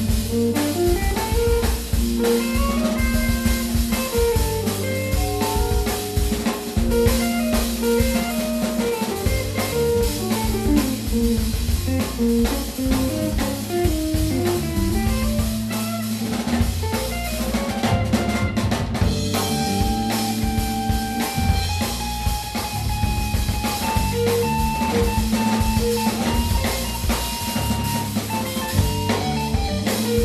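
Live band playing an instrumental number on drum kit, bass guitar, electric guitar and keyboards. A little past the middle, a lead line holds long sustained notes over the rhythm section.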